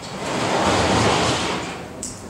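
Board eraser wiping chalk off a blackboard: one long rubbing swish that swells and fades over about two seconds.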